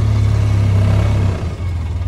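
Engine of a side-by-side utility vehicle running as it drives across a field, a steady low note that dips briefly about one and a half seconds in and then runs on.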